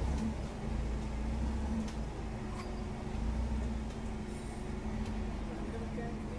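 Forklift engine running steadily with a low, even drone while it holds a load on its mast and jib boom, with a few light knocks.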